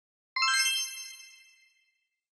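A single bright, bell-like chime sound effect, the sting of an animated logo intro, struck about a third of a second in and ringing out over about a second.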